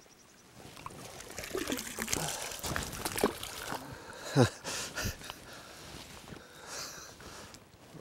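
Hooked trout splashing and thrashing at the water's surface as it is played on a fly line, a run of irregular splashes that dies down after about five seconds.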